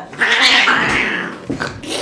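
Frightened cat, held down for an examination, giving one loud, harsh defensive hiss-yowl about a second long, followed by a short click.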